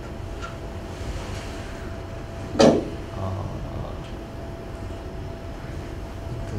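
Steady low hum of a room's ventilation, with a faint steady tone running through it. One brief loud sound comes about two and a half seconds in.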